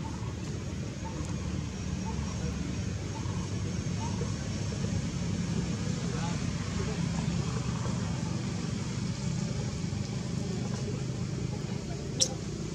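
Steady low background rumble with faint, indistinct voices.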